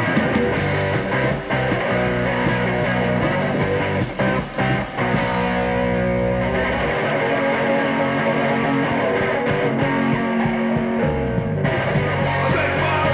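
Punk rock band playing live, electric guitar to the fore over the rhythm section, on a lo-fi live demo-tape recording. The playing breaks off briefly a couple of times about four seconds in.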